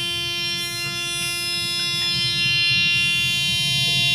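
Steady, unbroken buzz from a ThyssenKrupp (formerly Dover) elevator car, the tone known as the "Dover buzz": one held note with overtones, annoying to listen to.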